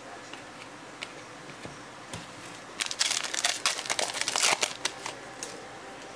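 A stack of trading cards being flipped through and handled, a few faint ticks and then about two seconds of quick, dense card flicking and rustling that starts about three seconds in.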